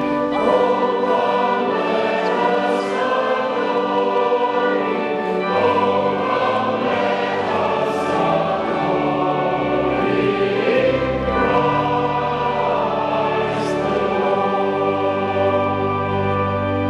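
Church choir singing with pipe organ accompaniment; sustained low organ notes come in about halfway through.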